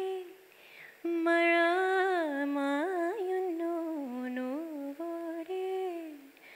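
A woman's solo voice, unaccompanied, singing a slow wordless melody in a Malayalam film lullaby. The notes are held and ornamented with bends and glides, with a short breath pause about a second in.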